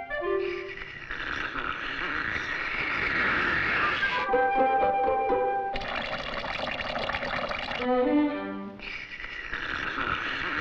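Cartoon sound effect of liquid rushing through a hose as it is siphoned by mouth, in three long stretches. Short orchestral phrases come between them, about four seconds in and again near eight seconds.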